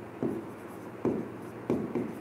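A pen or stylus writing on an interactive display's screen: a few short scratching strokes, each a fraction of a second long, as words are hand-written.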